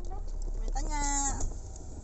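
A person's voice calling out one drawn-out syllable at a steady pitch, over the low rumble of a car engine idling under the cabin.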